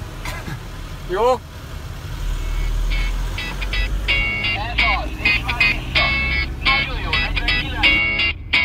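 Low rumble of a car driving, heard from inside the cabin, with a voice exclaiming "oh" about a second in. Background music with a choppy, stuttering beat comes in about three seconds in and carries on over the rumble.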